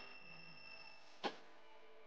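Faint steady high beep of a two-pole voltage tester signalling continuity, fading out in the first second, then a single light click a little over a second in.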